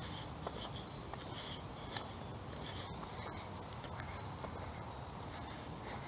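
Footsteps on an asphalt path under a steady low rumble, with short high bird chirps scattered throughout.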